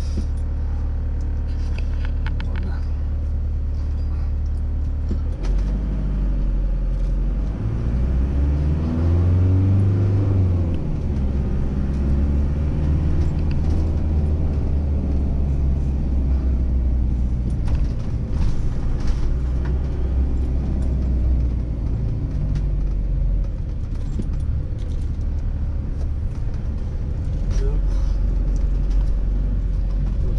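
Motorhome engine idling while stopped, then pulling away about five seconds in; its pitch rises as it accelerates and then settles into a steady low hum as it drives on.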